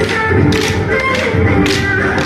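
Kolatam dance sticks clacking together in rhythm, several sharp wooden strikes about every half second, over loud dance music.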